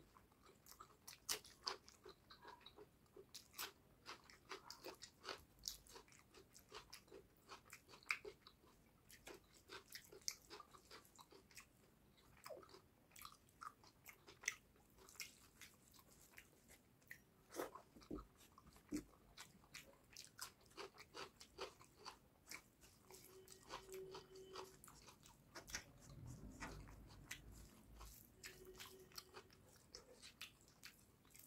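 Close-miked chewing of a mouthful of rice and fish curry: wet mouth clicks, smacks and small crunches coming several times a second.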